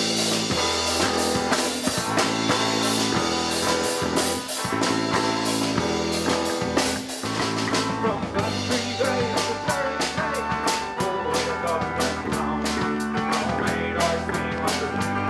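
Live Celtic rock band playing: electric bass, electric guitar and a drum kit keeping a steady beat, with the cymbals hitting harder through the second half.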